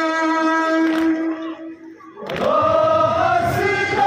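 A long held note fades out about a second and a half in. After a brief lull, a crowd of men takes up a Kashmiri nowha, chanting the lament in unison.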